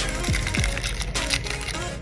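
A foil trading-card pack wrapper crinkling and tearing as it is ripped open by hand, with many small crackles, over background music.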